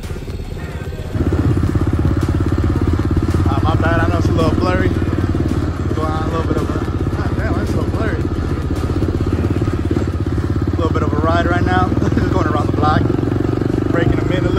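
An SSR pit bike's small single-cylinder four-stroke engine running steadily close by, stepping up louder about a second in and holding an even pitch. Voices call out over it a few times.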